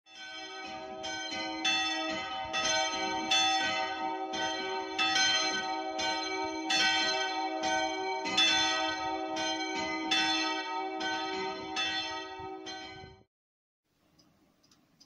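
Church bells ringing, struck one after another about twice a second with overlapping ringing tones; the sound fades in at the start and cuts off suddenly about a second before the end.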